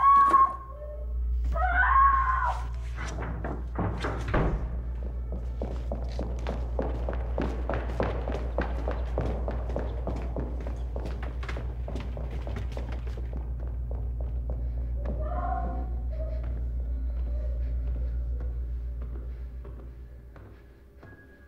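Tense film score: a steady low drone under a fast, even pulse of dull percussive thunks, with one harder hit about four seconds in. It opens with a short rising tone and fades near the end.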